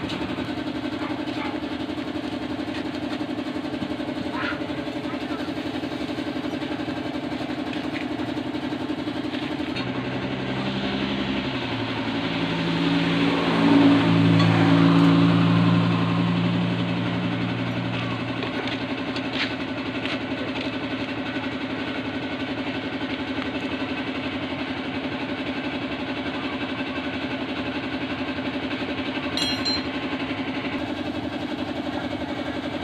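A steady engine drone runs throughout. About ten seconds in, a second, lower-pitched engine grows louder, is loudest a few seconds later and fades away by about eighteen seconds, like a vehicle passing by.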